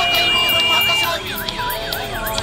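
Vehicle siren in a fast yelp, its pitch swooping down and up about three times a second, over singing or music. A steady high tone alongside it cuts off about halfway through.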